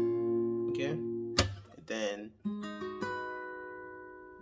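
Acoustic guitar fingerpicking a slow arpeggio on an E minor chord, the thumb on the bass string and the fingers on the higher strings, the notes ringing over one another. There is one sharp percussive click about a second and a half in. New notes are picked around the two- and three-second marks and then fade away.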